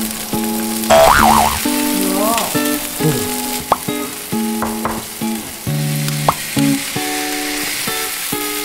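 Corn, garlic and mashed red beans sizzling in a hot frying pan as they are stirred in with a wooden spoon.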